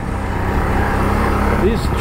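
ATV engine running steadily as the quad rides along a dirt trail, a continuous low hum with a steady tone above it.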